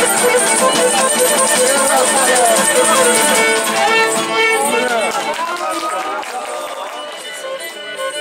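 Cretan lyra, a small bowed pear-shaped fiddle, playing live with laouto lutes strumming along, and voices heard over the music. The playing thins out and grows quieter in the last few seconds.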